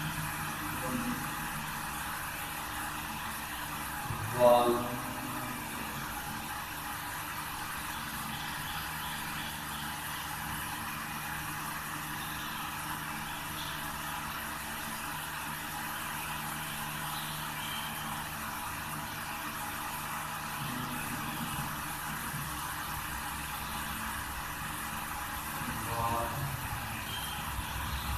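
Steady mechanical hum and hiss throughout, with a short, loud voice sound about four and a half seconds in.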